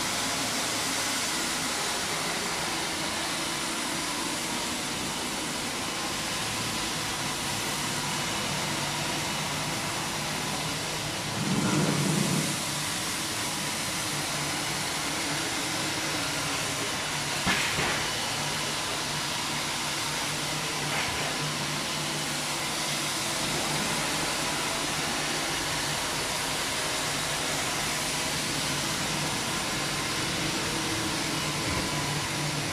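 Wilmop 50 compact floor scrubber-dryer running steadily as it is pushed across the floor: a constant motor and suction hiss with a low hum. A brief louder low rumble comes about twelve seconds in, and a short knock comes a few seconds later.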